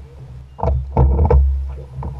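A drifting fishing boat on choppy water: a steady low rumble, with a cluster of sharp knocks of waves slapping the hull about halfway through.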